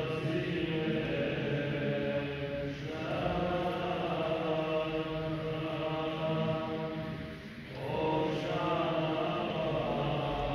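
Clergy chanting the Syriac liturgy of the Assyrian Church of the East in long, sustained phrases, with short breaks about three and eight seconds in.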